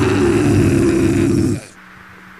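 Loud, distorted hardcore punk recording, a dense wall of guitar and drums, that cuts off abruptly about one and a half seconds in. A faint, steady amplifier hum is left ringing at the end of the track.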